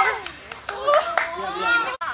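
A few sharp hand claps among a small group's excited shouting voices.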